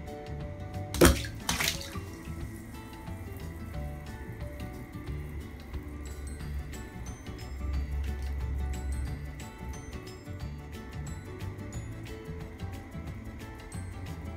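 A bath bomb drops into a filled bathtub with a sharp splash about a second in, followed by a smaller second splash. Background music plays throughout.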